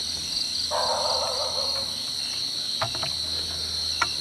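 A steady, high, continuous chorus of crickets and other night insects. A band of rustling hiss comes in suddenly under a second in and fades out about two seconds later.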